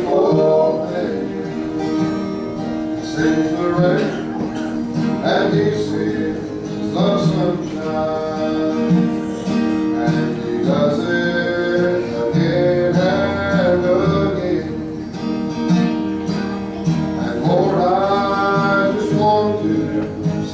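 A men's gospel trio singing with guitar accompaniment.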